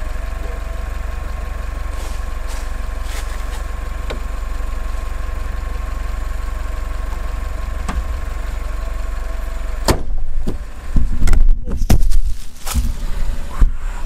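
A car engine idling steadily under its open hood during a dead-battery jump-start. About ten seconds in there is a sharp knock, followed by loud, irregular low rumbling and thumping.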